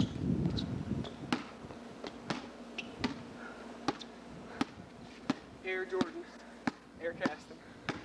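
Basketball bouncing on a concrete driveway in separate sharp knocks, roughly one to two a second, after a louder noisy clatter right at the start. Faint voices come in briefly near the end.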